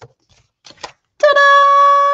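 A few soft taps of card being handled, then a woman's voice holds one steady high note for about a second, fading away at the end.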